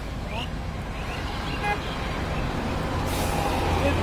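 Road traffic passing close by: an engine rumble that grows louder toward the end as a vehicle approaches, with a brief horn toot near the middle.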